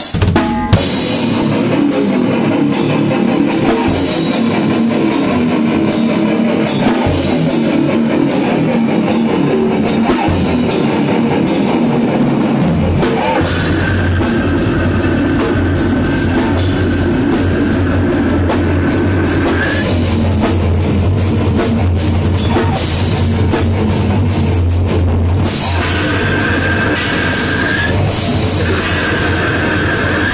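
Brutal death metal played by a full band: drum kit with bass drum, and heavily distorted guitar and bass, loud and unbroken. About halfway through, the low end gets much heavier and a high held tone rises over it.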